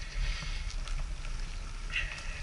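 Wind rumbling on the microphone and the rolling noise of a recumbent bicycle riding along a paved bike path: a steady low rumble with a hiss over it and a few faint clicks.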